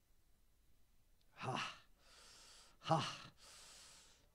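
A man breathing out audibly into a handheld microphone: two short voiced, sigh-like sounds about a second and a half apart, each trailing off into a soft breathy exhale.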